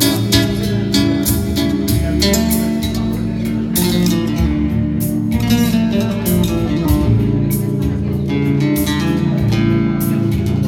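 Nylon-string classical guitar played fingerstyle in a quick run of plucked notes, over sustained low keyboard chords.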